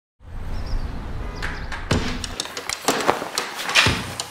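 A low hum for the first two seconds or so, with a run of sharp clicks and knocks throughout; the loudest click comes near the end.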